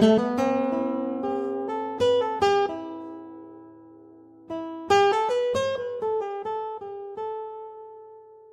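Pianoteq's modelled classical guitar, tuned to 31 equal divisions of the octave, playing plucked notes: a loud chord at the start and a quick run of notes, a lull around three to four seconds in while they ring, then a second phrase from about four and a half seconds that ends on a ringing chord.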